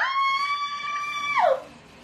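A woman's voice holding one high, steady note for about a second and a half, then sliding down in pitch as it ends.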